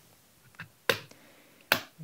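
Two sharp plastic clicks about a second apart, with a faint one before them: the back cover of a BlackBerry Classic snapping free of its clips as it is pried off with a plastic pry tool.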